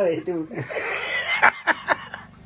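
A man laughing in breathy, wheezy bursts. In the second half come a few sharp slaps of roti dough being patted between the palms.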